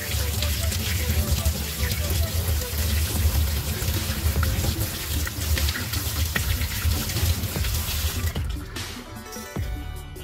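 Kitchen tap running in a stainless steel sink while small rubber brake-caliper boots are rinsed under it by hand to wash out the soap and old grease. The water stops a little after eight seconds in.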